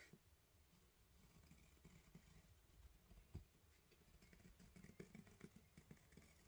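Near silence: room tone with faint small ticks, one a little louder about three and a half seconds in.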